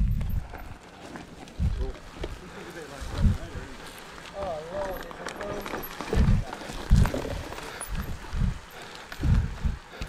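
Mountain bike riding down a dirt forest trail: a steady rush of tyres and rattle, with low thumps every second or so as the bike hits roots and bumps. A voice calls out briefly about halfway.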